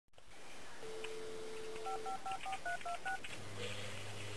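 Telephone dial tone, then seven quick touch-tone (DTMF) beeps as a number is dialled on a phone keypad. A low steady tone starts near the end.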